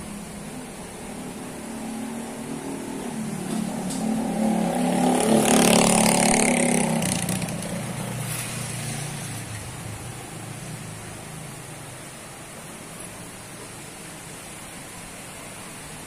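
A motor vehicle passing by: its engine grows louder, peaks about six seconds in, then fades away.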